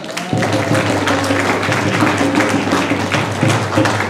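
Audience applauding, the clapping starting a moment in, over a steady low hum.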